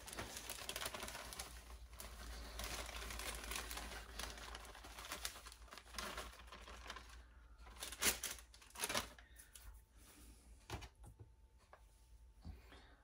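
Plastic inner bag of dry cake mix crinkling as the powder is shaken out of it over a glass baking dish. This is a faint, continuous rustle, followed later by a few short, sharper crackles.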